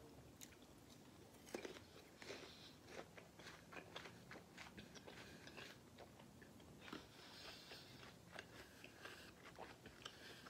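Faint, close-up biting and chewing of a crisp, juicy pear slice: a string of small wet crunches and mouth clicks.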